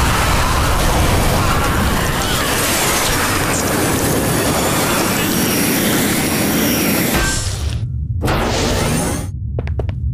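Cartoon explosion sound effect: a loud, dense blast and rumble lasting about seven seconds that cuts off suddenly, followed by a second, shorter burst about a second later.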